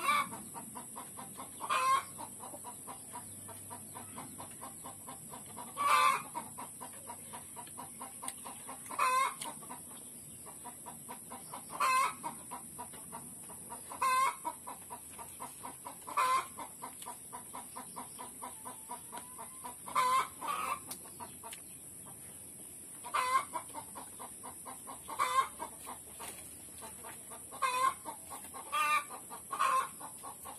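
Chickens clucking, short single calls repeated every two to three seconds, some coming in quick pairs.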